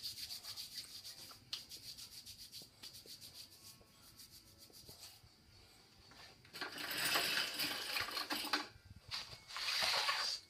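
Chalk-covered hands rubbing and slapping together in quick, even strokes, followed about seven seconds in by a louder, longer stretch of rubbing.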